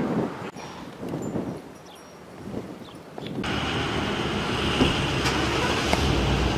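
Outdoor street ambience: wind on the microphone with traffic noise, quieter at first, then louder and steadier from about three and a half seconds in.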